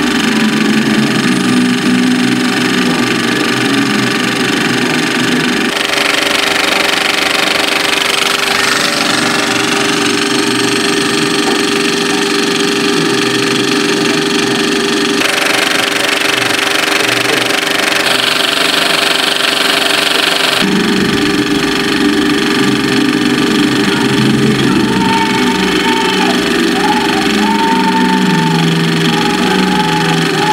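A 70mm film projector running with a steady mechanical hum, mixed with the film's orchestral soundtrack music playing in the cinema. The balance between machine and music shifts abruptly several times.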